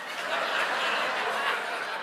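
Audience laughing, swelling briefly and then fading away near the end.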